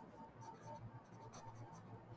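Faint scratching of a pen on paper as a few words are handwritten.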